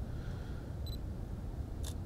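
Olympus E-M1 Mark II mirrorless camera taking a photo: a short high beep of autofocus confirmation about a second in, then the single click of the shutter firing near the end.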